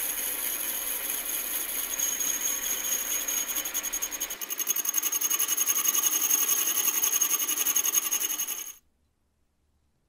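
Diamond dressing of a grinding wheel spinning on a metal lathe: the diamond dresser in the tool post scrapes across the turning wheel's face to true it, giving a steady gritty hiss with a high whine. It grows louder about halfway through and cuts off abruptly near the end.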